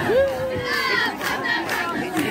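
A woman lets out one long, shouted whoop that rises at the start and is held for nearly a second, over the noise of a crowd in the stands.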